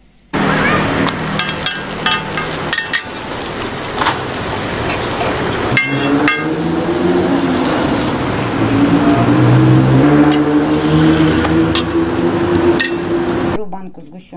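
Roti frying on a street vendor's flat metal griddle: a metal spatula clinks and scrapes against the griddle several times over a loud, busy noise. A steady low hum comes in about six seconds in, and the sound cuts off suddenly near the end.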